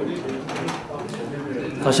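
Indistinct murmur of several people talking and greeting one another in a meeting room, with an announcer's voice starting loudly just before the end.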